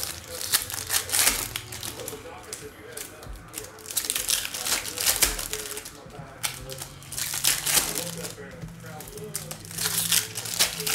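Foil trading-card pack wrappers being torn open and crinkled by hand, in several crackling bursts a few seconds apart.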